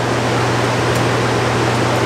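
A fan-type machine running: a steady rushing noise over a low, even hum, with one faint click about a second in.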